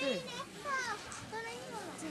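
Children's high-pitched voices talking and calling out over one another.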